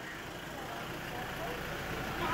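Faint background voices over a low, steady rumble.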